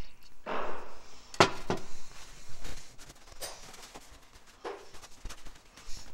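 A short hiss of aerosol carburetor cleaner sprayed onto a trimmer carburetor, followed by scattered clicks and knocks of small parts and tools being handled on a workbench.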